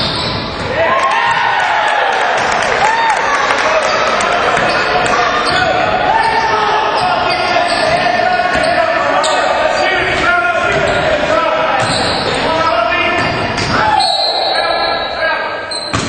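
Live basketball game sound in a gym: a ball bouncing on the hardwood, sneakers squeaking, and players' and spectators' voices echoing in a large hall.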